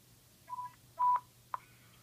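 Two short electronic beeps near 1 kHz, the second louder, then a sharp click, from a Whistler WS-1080 digital scanner's speaker between one recorded radio transmission and the next.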